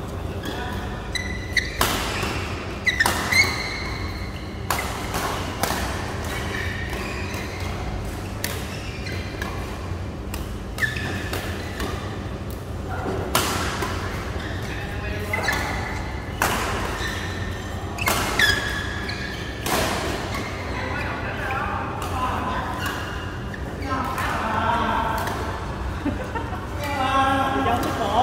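Badminton rally in a large reverberant hall: sharp smacks of rackets striking the shuttlecock every second or so, with short high squeaks of court shoes on the mat and players' voices, loudest near the end.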